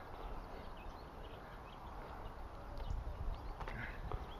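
Faint outdoor ambience: distant birds chirping over a low rumble, with a couple of light knocks near the end.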